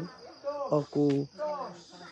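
Crickets chirring steadily in a high, even band, under a woman's voice speaking.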